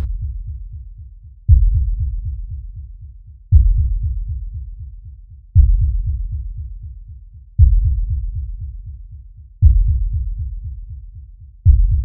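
Deep, low cinematic booms, one about every two seconds, each striking sharply and dying away slowly until the next: a slow, heartbeat-like pulse of trailer sound design.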